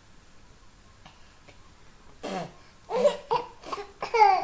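A baby laughing in several short bursts, starting about halfway through after a quiet start.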